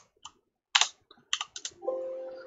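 Computer keyboard being typed on: a handful of separate, quick keystrokes as a number is entered.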